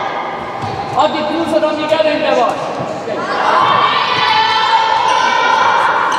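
A handball bouncing and thudding on the wooden floor of a sports hall, with a few sharp knocks about one and two seconds in. Girls' voices shout and call over it, with long held calls in the second half, echoing in the large hall.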